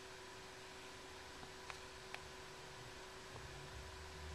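Faint steady hum and hiss of a small thermoelectric cooler's fan, running quietly while the unit heats, with a few light clicks.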